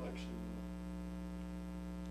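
Steady electrical mains hum with a stack of even overtones, running under the recording, with the tail of a spoken word at the very start.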